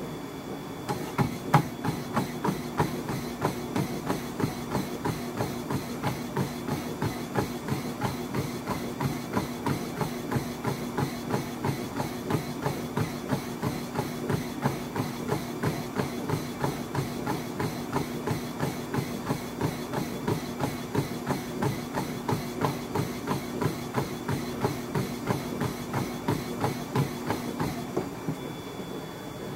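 Feet pounding the deck of a running treadmill in an all-out sprint, about three quick footfalls a second starting a second in. Beneath them runs the steady hum of the treadmill's motor and belt.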